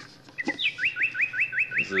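A bird singing a fast run of short rising chirps, about six or seven a second, starting near the first second.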